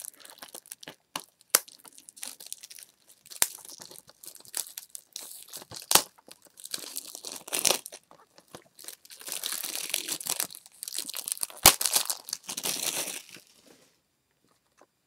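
Plastic wrapping being torn and peeled off a Blu-ray case: irregular crinkling and tearing with scattered sharp clicks, the longest and loudest crinkling in the second half.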